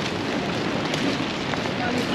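Wind blowing on the camera's microphone: a steady rushing noise.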